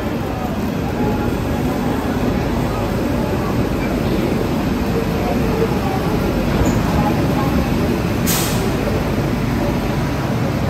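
Passenger train pulling out of a station, heard from an open coach door: a steady rumble of the wheels and running gear, with a short hiss about eight seconds in.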